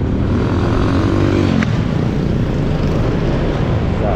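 Motorcycle ride in town traffic: steady engine rumble and wind noise. About a second in, an engine note briefly rises and falls.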